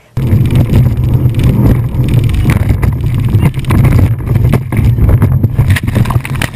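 Speedboat engine running at high speed under a loud, steady roar of wind and water rushing past the open cockpit, with wind buffeting the microphone. The noise rises in the highs near the end as the boat hits a wave and spray crashes over it.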